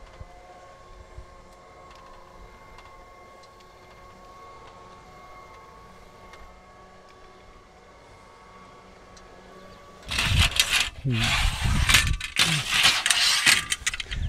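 Motorhome power awning's electric motor running with a faint, steady hum as the awning rolls out. About ten seconds in it gives way to loud rattling and scraping as the awning's support leg is handled and set.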